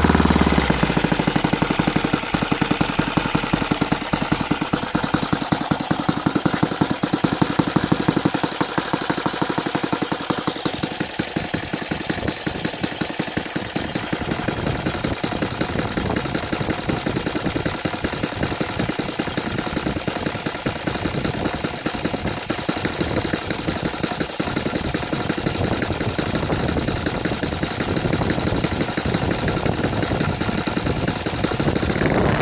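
Saito FG-36 four-stroke gasoline model aircraft engine on CH Ignitions CDI, swinging an 18x6 propeller at a low idle of about 1300 rpm, its firing beat even. The sound turns duller about ten seconds in.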